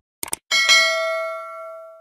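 Subscribe-button animation sound effect: two quick mouse clicks, then a single bright notification-bell ding that rings on and fades away slowly.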